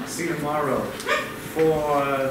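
A performer's voice in two short, high, sliding stretches of sound, about half a second in and again near the end.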